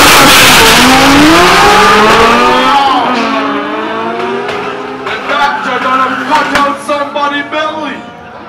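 Toyota Supra drag car launching hard off the line, its engine revving up through the gears with a rising pitch and a gear change about three seconds in. It fades as the car pulls away down the strip, with voices over it from about five seconds in.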